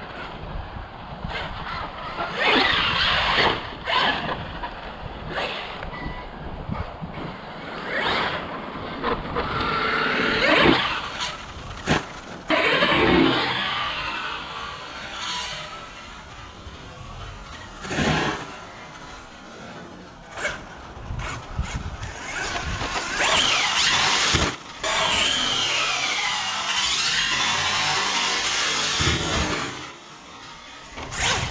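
Losi Super Baja Rey 2.0, a large brushless electric RC desert truck, being driven on dirt: the motor whine rises and falls with the throttle, mixed with scattered knocks and crunches from the chassis and tyres.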